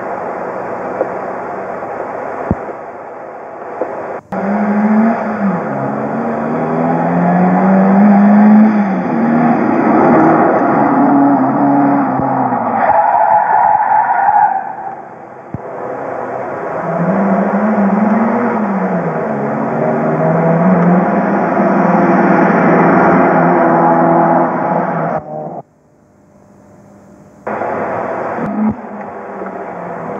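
Rally car engines running hard, the pitch climbing and falling again and again with gear changes and lifts off the throttle, in two long runs. The sound cuts out abruptly for about two seconds near the end, then another car is heard.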